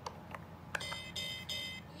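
Electronic pirate-ship toy's small speaker playing a short sound effect: a button click, then three quick steady tones in a row.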